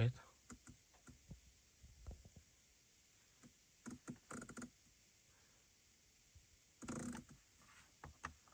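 Faint clicks of a BMW iDrive rotary controller being turned and pressed as the display menu is scrolled, with a denser run of clicks about four seconds in. A short breathy rustle comes about seven seconds in.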